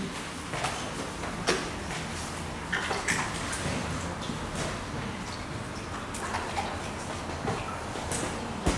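A sponge paint roller being washed in a steel saucepan of water: water sloshing and dripping, with a few sharp clicks of a kitchen utensil against the roller and pan.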